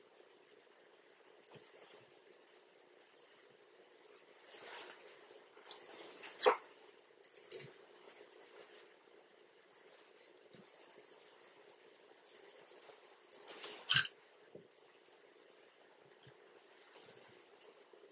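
Hands and small fly-tying tools working at a vise: scattered soft clicks and rustles over a faint steady hiss, with sharper knocks about six and a half, seven and a half and fourteen seconds in.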